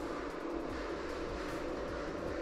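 Steady background noise with no distinct events: an even hiss with a faint hum.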